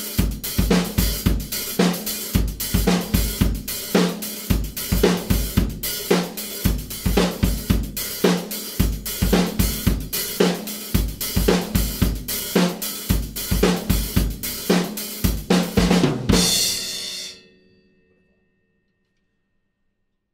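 Acoustic drum kit playing a disco groove: sixteenth notes on the hi-hat, open hi-hat on the off-beats, with bass drum and snare. It stops about three-quarters of the way through on a final hit whose cymbal rings out and fades.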